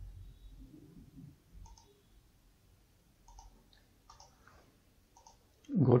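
A few short, sharp computer mouse clicks, spaced a second or more apart.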